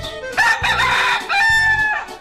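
A rooster crowing once, a call of about a second and a half that ends on a long held note, louder than the background music under it.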